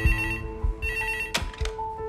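Office desk telephone ringing with two short electronic trills, then a click about one and a half seconds in as the handset is picked up. Background music plays under it.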